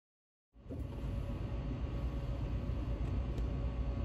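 Dead silence for about half a second, then steady room noise with a low rumble and a faint steady hum.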